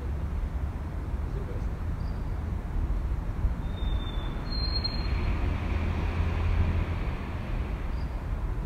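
Street ambience: a steady low traffic rumble, with a vehicle passing that swells about five to seven seconds in, under faint distant voices in quiet conversation. Two brief high chirps sound around four seconds in.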